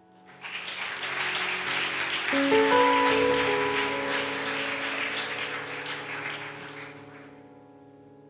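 Audience applauding. It starts about half a second in, peaks around three seconds and dies away near the end, over soft background music of long sustained notes.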